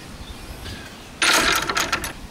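Metal gravity latch on a wooden gate rattling as it is worked: a sudden burst of rapid metallic clicks starting a bit past halfway and lasting under a second.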